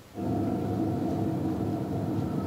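A low, steady drone from the stage production's sound design, with several held tones over a rumbling low end. It starts abruptly a moment in and holds unchanged.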